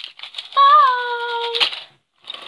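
Small plastic toys and trinkets clattering and rattling as a hand sweeps them across a table. About half a second in, a girl's voice holds one high note for about a second.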